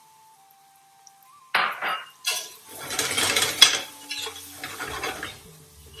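A spoon stirring spices and softened onion in a stainless-steel pressure cooker pot, scraping and clinking irregularly against the pot as the spices fry. It starts about a second and a half in, after a quiet moment, and is loudest about halfway through.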